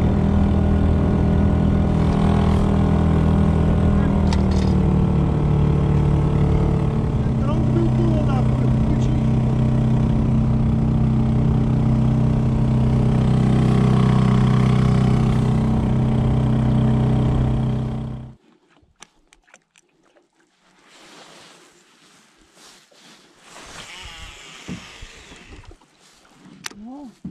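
Small petrol outboard motor driving a rowboat, running steadily with a shift in engine speed a few seconds in, then cut off abruptly about eighteen seconds in. The motor has been said to need running on part choke all the time. After it stops only faint small knocks and water noise remain.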